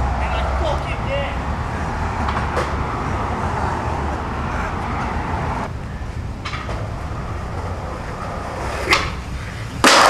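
Street background with faint voices, then a sharp skateboard pop about nine seconds in. About a second later comes a loud crash as skater and board come down on concrete at the bottom of a big stair set and the skater falls.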